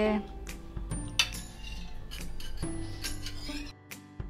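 Stainless-steel ladle and spoon clinking against steel bowls: several light, separate clinks over soft background music.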